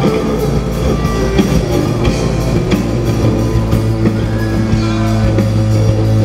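Live rock band playing: distorted electric guitars, bass guitar and a drum kit, with a held low bass note through the second half.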